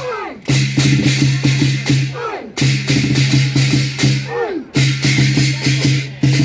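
Lion dance percussion: drum, cymbals and gong playing a fast repeating beat in phrases about two seconds long. Each phrase is broken by a short gap with a falling, ringing tone.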